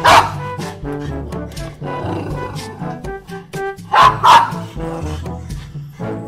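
German Spitz barking at dogs through a gate: one sharp bark right at the start and two close together about four seconds in, over background music.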